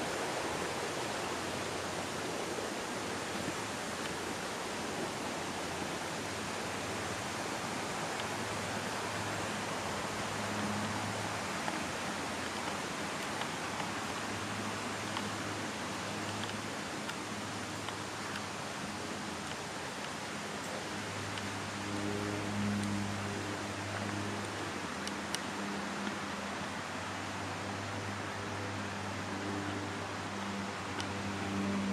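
Steady rushing of a rocky stream's white water, an even hiss. From about a quarter of the way in, a low hum comes and goes beneath it.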